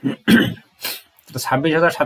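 A man clears his throat once near the start, then starts speaking about a second and a half in.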